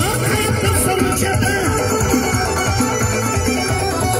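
Loud live folk music with a large hand-beaten frame drum (doira) and a jingling tambourine keeping a steady dance rhythm.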